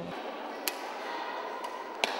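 Reverberant sports-hall background noise with two sharp taps about a second apart, badminton rackets striking shuttlecocks.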